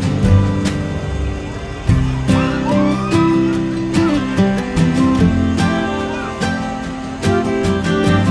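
Music with guitar and a regular beat.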